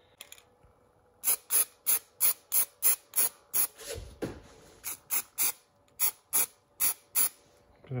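Aerosol can of etching primer sprayed in about fifteen short hissing bursts, roughly three a second with a brief pause midway, laying a light first coat on a freshly welded steel bracket.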